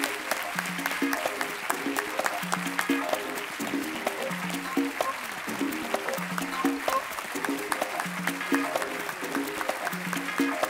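Audience applauding, a steady patter of many hand claps, with music playing a repeating pattern of low notes underneath.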